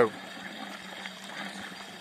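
Steady churning and splashing of water where the Samuca oxygenator's outlet pipe jets into the fish tank, aerating the water.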